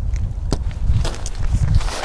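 Handling noise of hands working a string tie loose where a tarp vestibule is tied to a tent frame: light rustling and a few soft knocks in the middle, over an uneven low rumble.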